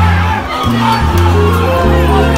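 Music with a deep bass line playing under the noise of a shouting protest crowd.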